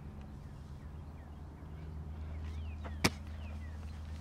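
Low steady outdoor hum with a few faint chirps. About three seconds in comes a single sharp smack: a football caught in the punter's hands just before his punt.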